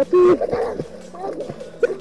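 Children's voices calling out while playing in river water, with a short pitched call right at the start and quieter chatter after it, over light splashing.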